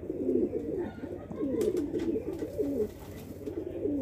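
Several domestic pigeons cooing, their low overlapping coos running on without a break.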